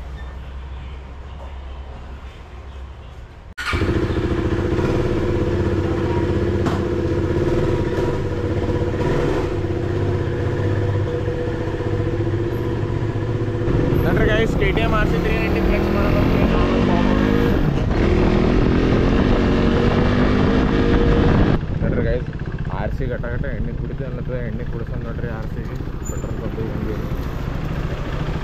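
A KTM RC sport bike's single-cylinder engine. It starts as a low rumble and gets much louder all at once about three and a half seconds in, running steadily. In the middle its pitch rises and falls as it is ridden, and it changes suddenly again a little past twenty seconds.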